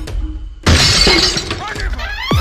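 A sudden loud crash of bricks smashing onto paving about two-thirds of a second in, dying away over about half a second, followed by a short cry from a voice.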